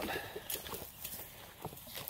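A few faint, scattered clicks and rustles of handling noise, about three light knocks spread over two seconds.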